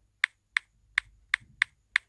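Key-press clicks from a smartphone's on-screen keyboard, six short sharp ticks at an uneven pace of about three a second, one for each letter as a word is typed into a search box.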